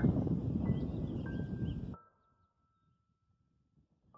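Wind rumble on the microphone during the first half, with soft, high electric-piano notes entering over it, each a step lower than the one before. About halfway the outdoor noise cuts off abruptly, and the last note fades into near silence.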